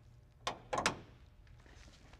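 Sharp clicks of a vintage car's door handle and latch being worked, three strokes about half a second and just under a second in, over a faint low steady hum.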